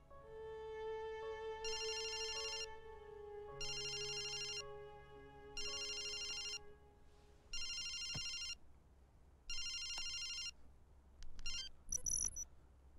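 A phone ringing with an electronic trilling ring: five rings, each about a second long and about two seconds apart. Under the first rings, soft sustained string music fades out.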